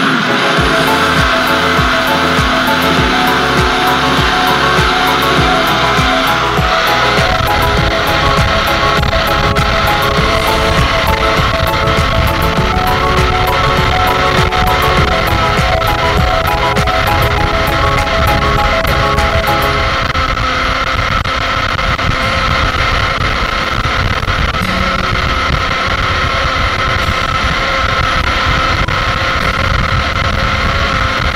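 A single-serve personal blender's motor runs continuously, blending a thick green sauce in its jar. Background music plays underneath.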